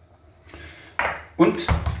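A kitchen utensil knocking and clinking against a stainless steel cooking pot about a second in, with a short spoken word after it.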